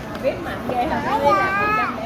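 A young child's voice: a short word at the start, then one drawn-out, high-pitched utterance in the second half.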